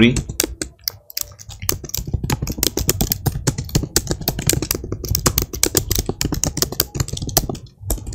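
Typing on a computer keyboard: a quick, uneven run of keystrokes with a short break about a second in.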